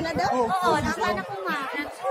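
A group of women chattering, several voices talking at once.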